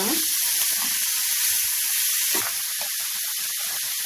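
Food sizzling in hot oil in a frying pan: a steady hiss dotted with small crackles.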